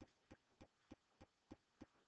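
Near silence with faint, evenly spaced clicks, about three a second.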